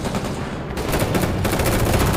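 Rapid automatic rifle fire, many shots in quick succession over a low rumble, growing denser about three-quarters of a second in.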